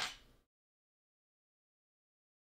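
Near silence: a brief noise at the very start that fades out within half a second, then nothing.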